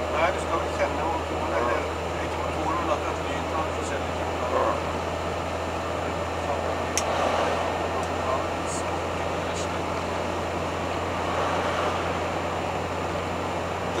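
Steady engine and road drone inside the cab of a 1985 Hobby 600 motorhome on a Fiat Ducato chassis, cruising at about 70–80 km/h, with a constant low hum underneath. A single sharp click is heard about halfway through.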